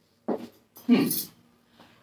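A woman's short murmured "hmm" with an audible breath about a second in, after a brief click near the start.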